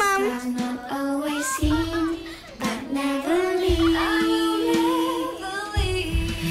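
A child singing a slow melody over soft music, holding one long note in the middle, with a low bass note about every two seconds.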